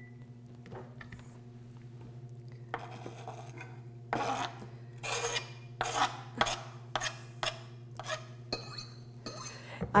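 Chef's knife scraping chopped cilantro off a plastic cutting board into a glass bowl: a string of short, irregular scrapes and taps that begin about four seconds in, over a steady low hum.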